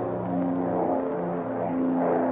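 Cartoon sound effect of a swarm of flies buzzing: several droning buzzes at slightly different pitches, shifting up and down.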